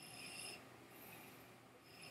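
Near silence with faint, soft sipping from a whisky glass held at the lips: a short hiss of drawn-in breath and liquid at the start and a fainter one about a second in.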